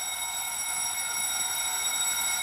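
A steady high-pitched electronic tone made of several pitches held together, over faint room noise.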